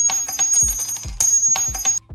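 Drill drum-kit FX sample auditioned on its own: a high, ringing, bell-like tone pattern sounding in two stretches over several deep thumps, cutting off suddenly at the end.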